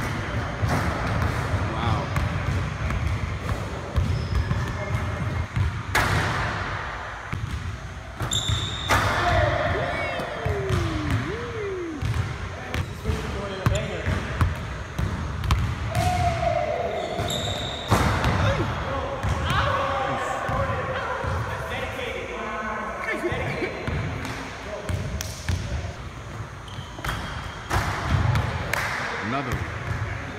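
A basketball bouncing on a hardwood gym floor and hitting the backboard and rim during dunk attempts, with sharp impacts every few seconds.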